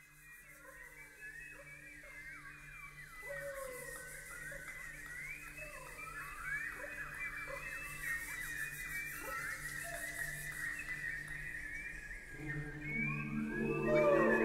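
Choral-orchestral music opening with many quick, bird-like whistled chirps and pitch glides over a soft, low held tone, growing gradually louder. Near the end, fuller sustained chords come in.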